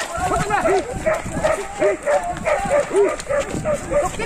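Several men giving short, repeated shouts, several a second, as they haul together on a rope.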